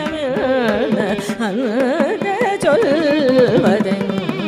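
Carnatic concert music: a female voice singing with heavily ornamented, constantly wavering and sliding pitch, shadowed by violin. Sharp mridangam strokes run through it over a tanpura drone.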